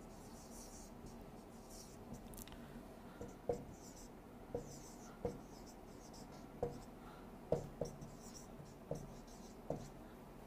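Marker writing on a whiteboard: faint scratchy squeaks of the tip as it draws, with light taps of the marker against the board about once a second in the second half.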